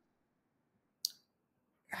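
Near silence in a pause between sentences, broken by one short, sharp click about halfway through.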